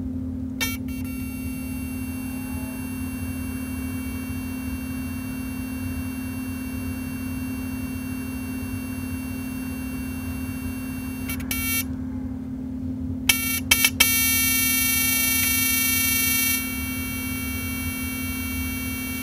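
Crown JBL A6000 GTi car amplifier powered up with its cover off: a steady low hum with a high-pitched, many-toned electronic whine over it from its switching power supply. The whine cuts out about twelve seconds in, then comes back after a few sharp clicks, louder for a couple of seconds.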